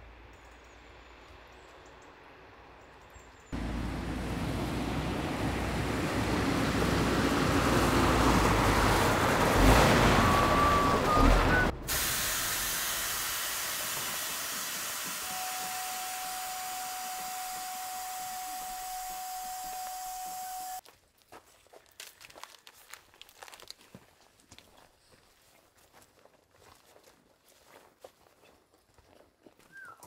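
Heavy articulated lorry: a loud stretch of engine and road noise that grows louder as it approaches, then, after an abrupt cut, a loud steady hiss with a held whine over it that cuts off suddenly. Faint scattered crunches and ticks follow.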